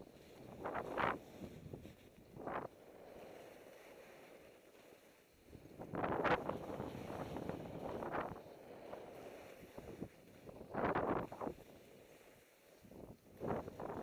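Skis or a snowboard sliding downhill through snow, the edges hissing and scraping through it in repeated surges on each turn, about five times, with wind rushing on the microphone in between.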